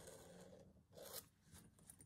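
Near silence with faint scratching of a pen marking lines on fabric against a metal ruler, and a brief scrape about a second in.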